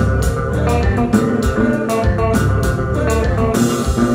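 Live kompa band playing an instrumental passage: electric guitar lines over a bass guitar groove, keyboard and drum kit. A steady hi-hat beat drops out about three and a half seconds in.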